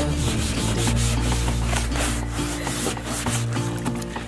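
Hands scrubbing a wet plastic tub with a sponge: quick, irregular rubbing strokes over a background song.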